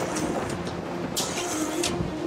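Soft background score in a quiet stretch: a held low note over a rumbling bed, with a brief high hiss a little past the middle.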